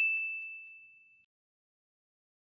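A single bright ding, a bell-like chime sound effect, ringing on one pitch and fading away within about a second.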